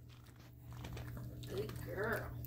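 Pug chewing and licking at a chew treat: faint, irregular wet chewing and crunching clicks. A person's voice comes in during the last half second.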